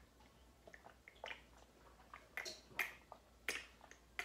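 A person chewing food with a few short, sharp wet smacks, about four spread across the few seconds.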